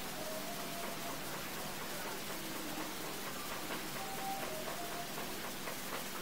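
Steady low hiss of room noise, with a few faint, brief squeaks of a marker pen on a whiteboard as a row of x's is written.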